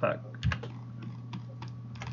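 A few sharp clicks from a computer's mouse and keyboard, the loudest cluster about half a second in and fainter single clicks later, over a steady low hum.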